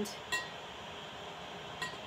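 Two light glass clinks about a second and a half apart, from a potion bottle being handled.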